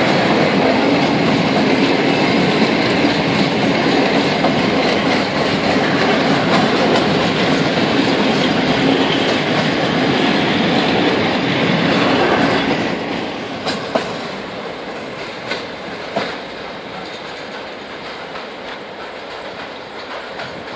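Long freight train of domed covered hopper wagons rolling past at close range, the wheels clattering on the rails. About thirteen seconds in, the last wagons go by and the sound drops to a fainter, receding rumble with a few sharp clicks.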